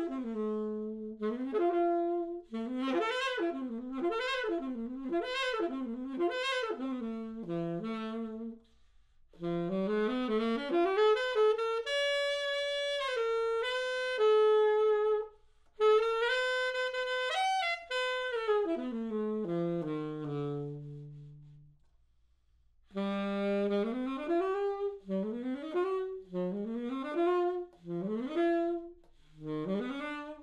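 Yamaha YAS-82Z alto saxophone played solo and unaccompanied, in melodic phrases separated by short pauses. About twenty seconds in, a low note is held and fades away, and after a brief silence the playing resumes.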